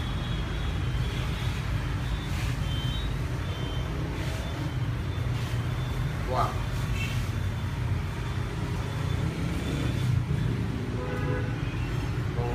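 Steady low rumble of road traffic, with a brief higher-pitched sound about six seconds in and faint voices near the end.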